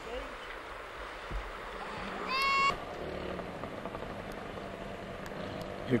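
Faint outdoor background with a low distant engine hum, and one short, high-pitched call of about half a second a little over two seconds in.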